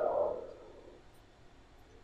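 The tail of a man's spoken phrase through a microphone and PA, falling away within the first half second, followed by a pause of near silence with faint room tone.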